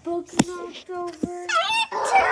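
Chicken-like clucking squawks: four short, flat-pitched calls in a row, the last one higher and rising, with a couple of sharp clicks between them.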